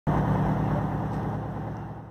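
A vehicle engine idling steadily with a low hum, fading gradually toward the end.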